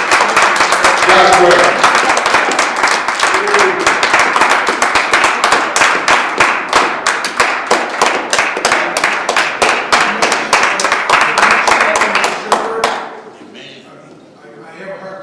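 Audience applauding, a dense patter of clapping with a few shouts near the start, stopping fairly suddenly about a second before the end.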